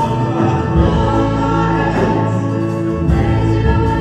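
A live worship song: a man and a woman sing together with a full band, holding long sustained notes over steady bass.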